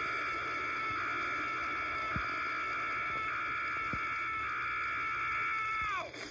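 Cartoon fire-breath sound effect from a dragon-shaped machine: a steady rushing blast under one long, high held tone that dips in pitch as it cuts off at the end.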